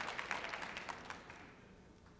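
Audience applauding, the clapping thinning out and dying away by about a second and a half in.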